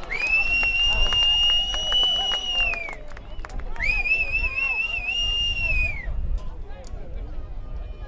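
Referee's whistle blown in two long, high blasts, the second with a slight trill, signalling the try that has just been scored. Spectators and players talk underneath.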